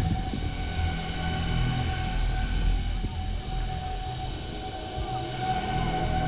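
Steady whine of a snowmaking fan gun (snow cannon) running, several constant tones over a low rumble.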